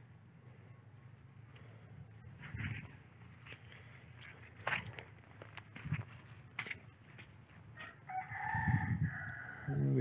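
A rooster crowing faintly about eight seconds in, over scattered soft knocks and thumps.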